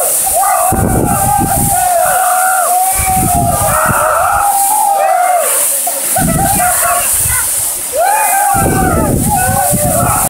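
Waterfall pouring into a rocky pool, with men yelling and whooping over it in long rising-and-falling calls.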